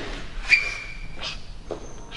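Plate-loaded low row gym machine being worked by hand: a metallic click about half a second in with a short high-pitched ring after it, then a brief rustle and a light knock.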